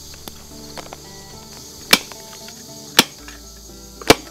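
Hand staple gun firing twice, about a second apart, driving staples through fabric into a wooden box.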